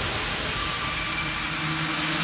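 White-noise sweep in an electronic dance track's breakdown: a steady hiss with faint tones beneath it, swelling near the end.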